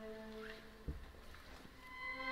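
A brief lull in a string orchestra's playing: the last held notes fade away quietly, with a short rising squeak about half a second in and a single low thump just under a second in.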